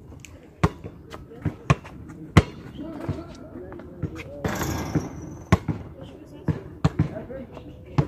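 A basketball bouncing on a hard outdoor court: a string of sharp, irregular thuds, some in quick pairs, spread across the whole stretch.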